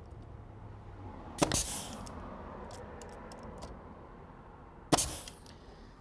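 Pneumatic finish nailer firing two sharp shots, about a second and a half in and again near the end, driving 2½-inch finish nails through the door jamb to tack it to the framing.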